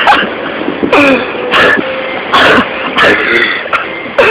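A man laughing and gasping in about six short, breathy bursts over a steady hiss.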